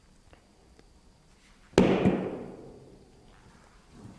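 A vaulting pole's far end slapping down onto the runway in a snap plant drill: one sharp, loud smack a little under two seconds in, with a quick second hit right after and a ringing tail that dies away over about a second.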